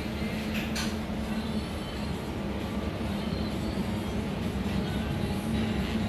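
Steady low machine hum from industrial cleaning-line equipment, with a brief sharp click less than a second in.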